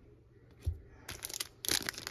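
A soft knock, then the foil wrapper of a Donruss Optic football card pack crinkling and tearing as it is opened. The crinkling starts about a second in and grows dense near the end.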